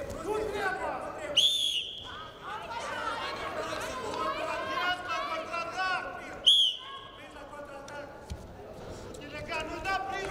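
Two short blasts of a wrestling referee's whistle, about five seconds apart, stopping the action on the mat and then restarting it. Voices call out throughout.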